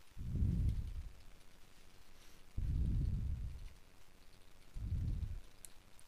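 Handling noise on a handheld camera's microphone: three low rumbling bumps, each under a second long, near the start, about halfway through, and near the end.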